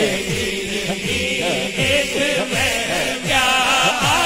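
A man sings a naat in a melismatic, wavering voice, with other men's voices chanting along behind him, over a low pulsing beat of about three thuds a second.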